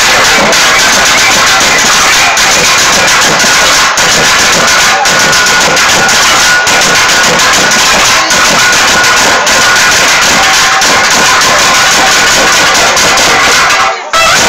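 Loud live festival folk music, driven by dense drumming with held high tones over it, recorded close and so loud that it overloads into distortion. It cuts out briefly at the very end.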